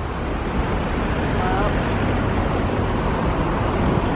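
Steady city traffic noise, a continuous rumble and hiss without breaks.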